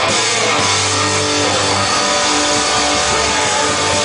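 Live rock band playing loud, with electric guitars and a drum kit.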